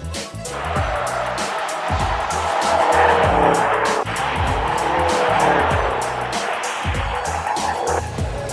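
Tyres of an all-wheel-drive Subaru WRX STI squealing as the car spins donuts on asphalt with traction control off, the squeal starting about half a second in and loudest a few seconds later. Background music with a steady beat plays throughout.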